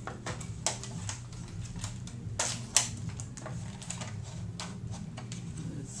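A Polaroid 320 Land Camera being handled, with a run of irregular clicks and knocks and one sharp click about halfway through.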